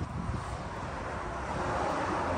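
Wind buffeting the microphone outdoors: a steady rumble with an even hiss over it.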